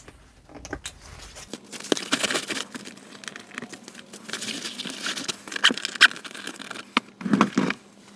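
Nylon shoulder straps of a Veto Pro Pac Tech Pac Wheeler tool backpack being folded and stuffed back into their pocket. The sound is a run of fabric rustling and handling noise, broken by irregular clicks and knocks from the straps' metal clips.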